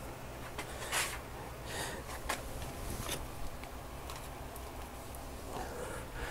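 Faint handling noise of a camera being set in place: a few soft clicks and rustles spread over the first half, over a low steady hum.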